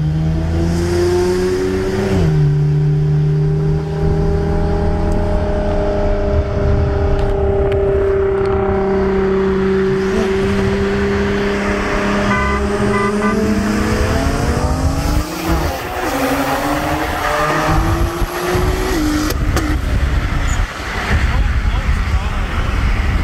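BMW 335i's N54 twin-turbo straight-six, fitted with upgraded 19T turbos, heard from inside the cabin. It accelerates with an upshift about two seconds in, then runs at fairly steady, slowly rising revs. The revs climb and change again from about 14 seconds. A few short beeps sound a little past halfway.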